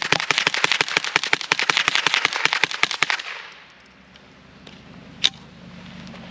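Rapid semi-automatic fire from a suppressed AR-15 with a CMMG .22LR conversion bolt: a fast string of shots, several a second, for about three seconds, then one more lone shot about five seconds in. The ammunition is ordinary supersonic .22LR, not subsonic, so each suppressed shot still carries a little crack.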